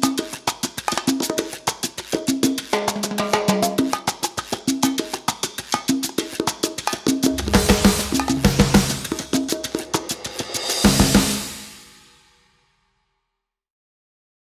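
Upbeat background music driven by busy drums and percussion over a repeating bass line, growing louder and fuller after about seven seconds. It ends on a final hit that rings out and fades to silence about twelve seconds in.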